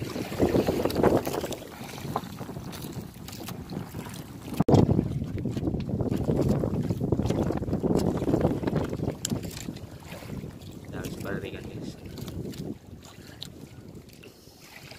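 Wind buffeting the microphone aboard a small outrigger fishing boat: an uneven rumble that swells and fades, with a few light knocks and one sharp knock about five seconds in.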